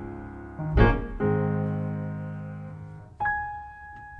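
Solo keyboard playing slow, sustained chords with no rhythm section. A fresh chord is struck about a second in and left to fade, then a single high note is held near the end. This is a soft introduction before the vocal comes in.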